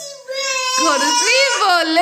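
A young child's long, high-pitched, cry-like wail, starting about a third of a second in and wavering up and down in pitch.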